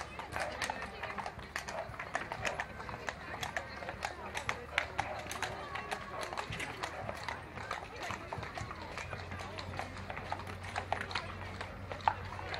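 Horses' hooves clip-clopping on asphalt as horse-drawn carriages pass at a walk, the strikes coming as many irregular sharp clicks, over a murmur of crowd voices.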